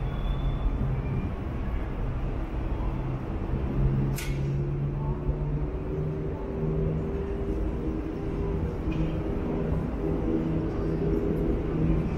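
Street ambience of passing and idling vehicle traffic: a steady low engine hum under a general urban noise bed, with one short, sharp hiss about four seconds in.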